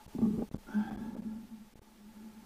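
Muffled sloshing and splashing of lake water around a camera at the waterline, heard through its waterproof housing, with two short louder surges in the first second.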